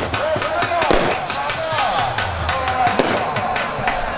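Large outdoor crowd of spectators with voices and music, broken by a quick, irregular run of sharp cracks.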